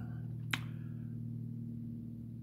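Steady low hum, with a single sharp click about half a second in.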